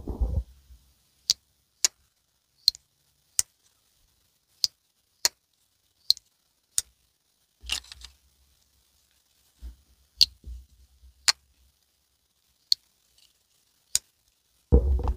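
Twosun TS197 slip joint pocketknife's blade opened and closed over and over, the backspring snapping it into the open and closed positions with a sharp click each time: about a dozen crisp clicks, mostly in pairs, showing great walk and talk. A few dull handling thumps come in the middle.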